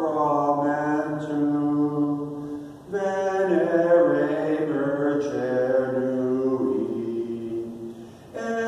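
Slow sung chant: a single low voice holding long notes that shift in pitch, with a short break for breath about three seconds in and another at the end.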